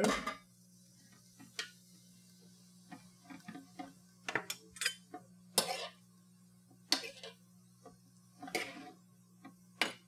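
Metal tongs clicking and scraping against a stainless steel sauté pan as penne pasta is tossed, in about a dozen irregular clatters, over a low steady hum.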